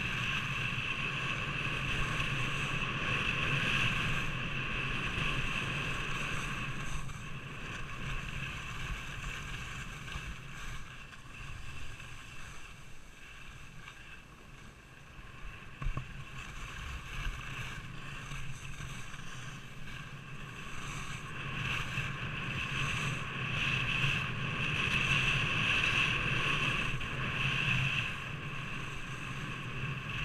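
Wind rushing over a helmet- or body-mounted action camera and skis hissing over packed snow during a downhill run, rising and falling with speed. It dips through the middle, with a single sharp knock about halfway, and swells again near the end.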